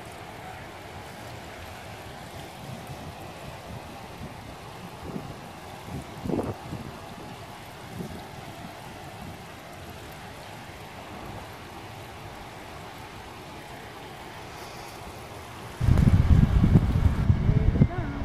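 Steady rush of a river running over rocks, with a few brief faint sounds around six seconds in. About sixteen seconds in, much louder wind buffeting on the microphone suddenly takes over.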